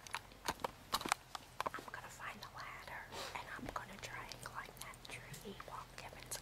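A handful of sharp clicks in the first second and a half, like a computer keyboard or mouse being worked, followed by soft, indistinct speech or whispering.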